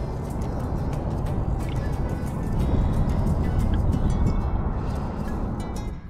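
Wind rumbling on the microphone, steady throughout, with background music underneath.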